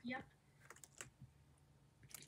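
A brief spoken "yep", then a few faint, sharp clicks, like keys or a mouse being clicked.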